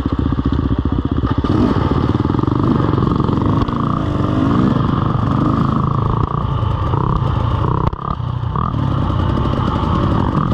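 KTM EXC 300 two-stroke enduro bike engine running on the trail under varying throttle, its pitch rising and falling as the rider works the throttle. A brief throttle-off drop comes about eight seconds in.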